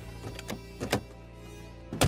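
Car doors being opened, with two short clicks about half a second and a second in, then a loud door slam right at the end, over background music.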